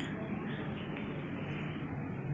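A covered steel kadai of vegetables cooking on a gas stove, giving a steady, even hiss.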